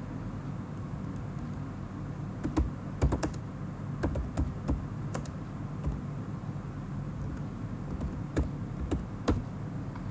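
Keystrokes on a computer keyboard, typed in short irregular bursts over a steady low hum.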